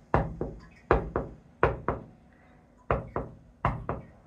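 Knocking on a hard surface in quick double knocks, about five pairs with short pauses between, copying the continuous tap-tap-tapping heard from the flat upstairs.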